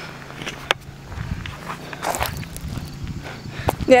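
Footsteps on dirt and handling knocks as the camera is carried, with a sharp click just before a second in. A faint, steady lawn mower engine drone sits underneath.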